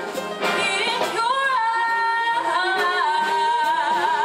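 A female vocalist sings with a jazz big band of horns and drum kit behind her. After a few drum hits she holds one long note, which starts to waver with vibrato near the end.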